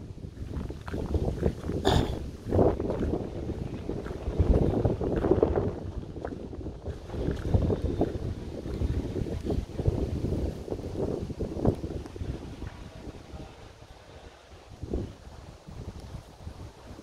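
Wind buffeting the camera microphone in irregular gusts, a rough low rumble with knocks, easing off near the end.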